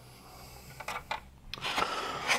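Faint handling noise: a few light clicks and knocks as hard plastic vacuum attachments are moved about, starting about a second in.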